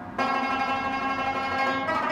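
Afghan rabab played: a stroke on the strings a moment in sets off a full, ringing chord that sustains, and another stroke comes near the end.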